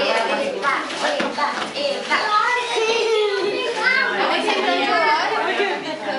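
Indistinct chatter of several voices at once, children's high voices among them, with no clear words.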